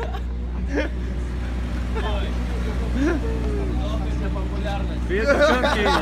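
Scattered voices and outdoor crowd chatter, thickening about five seconds in, over a steady low motor hum.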